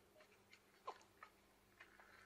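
Near silence, with a few faint clicks and one short falling squeak just under a second in.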